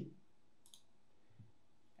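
Near silence with a single faint computer mouse click about two-thirds of a second in.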